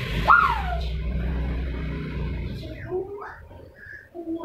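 A short voice sound that rises then falls in pitch just after the start, over a steady low hum that dies away about three seconds in; brief voice fragments follow near the end.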